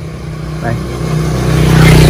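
A motor vehicle engine running steadily with a low hum, getting louder over the second half.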